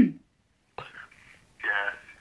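Speech only: a voice trails off at the start, then after a silent gap come two short snatches of a voice over a telephone line, thin and cut off in the highs.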